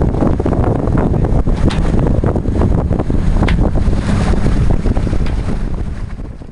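Wind blowing hard across the microphone aboard a sailing yacht, a loud, uneven rush with constant buffeting.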